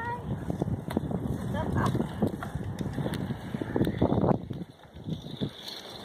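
Wind and handling rumble on a handheld camera microphone while riding a bicycle on a paved trail, with scattered clicks and rattles from the bike; the noise drops briefly about five seconds in.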